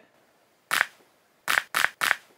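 Small plastic bone-cracking prank gadget twisted in the hands, giving short sharp cracks: one about two-thirds of a second in, then two more in quick succession near the end.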